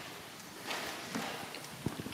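A few faint footsteps on a hard wooden floor, with a sharp click near the end.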